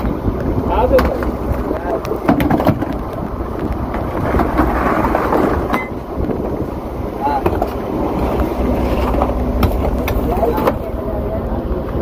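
Block ice being broken up with a long-handled metal blade on a boat's deck: sharp, irregular strikes of metal into ice, with chunks knocking about, over the steady low hum of the boat's running engine.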